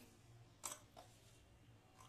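Near silence with two faint, short clicks a little after half a second and at about one second in: onion and garlic pieces being pressed into a steel mixer-grinder jar by hand.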